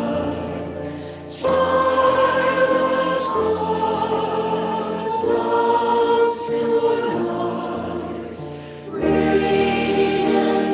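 A choir singing a slow, hymn-like piece in long held chords, with short breaks between phrases about a second and nine seconds in.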